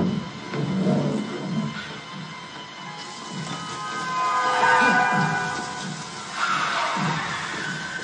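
A film scene's soundtrack, mainly music, played over a cinema's speakers and heard in the room, with irregular low swells.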